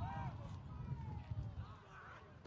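Footballers' voices shouting short calls across the pitch during play, several arching cries in the first second and another near the end, over a steady low rumble.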